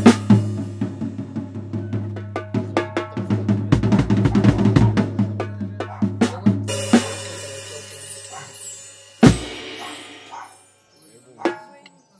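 Drum kit played with sticks: a fast run of snare, tom and bass drum hits with Sabian cymbals, a cymbal crash about seven seconds in, then one last hard hit that rings out, a single later tap, and the kit falls quiet.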